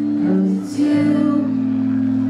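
Live acoustic pop ballad: long held notes, several pitches at once, over acoustic guitar, played through a stage PA, with a brief break in the line just after half a second.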